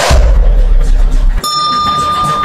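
Video-overlay sound effects for a like-and-comment animation, over party music: a swoosh into a deep bass hit. About a second and a half in, the bass cuts off and a single bell-like ding rings on as a steady high tone.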